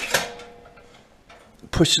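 Air control rod of an Osburn 2300 wood stove being pushed in to cut the fire's air supply once the stove reaches about 600 degrees: a short metal slide at the start, then a faint ringing tone that fades within about a second.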